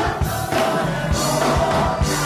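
Gospel choir singing, backed by a drum kit and keyboard, with steady drum beats under the voices.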